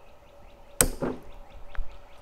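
A single sharp metallic clank with a short ring about a second in, as a Roots gas meter is handled and shifted on a cart, followed by a faint click near the end.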